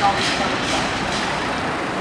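Steady city street traffic noise, with light footsteps on stone paving about twice a second.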